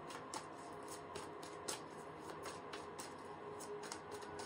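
A tarot deck being shuffled by hand, the cards slid from one hand to the other with soft, irregular flicks and clicks.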